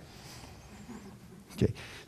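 A pause of faint room noise in a church hall, then a man's voice says a brief "okay" about one and a half seconds in.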